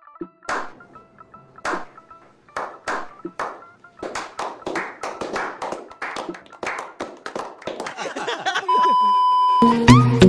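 A small group slow-clapping: a few single claps at first, then coming faster and faster into quick applause, over faint background music. Near the end the clapping stops, a steady beep-like tone sounds for about a second, and then loud music begins.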